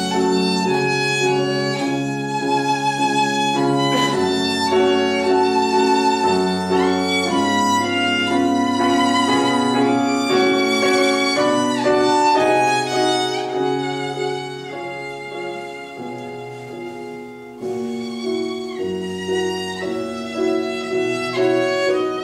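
Violin playing a slow, sustained melody with vibrato over grand piano chords accompanying it. The music grows softer about two-thirds of the way through, then swells again.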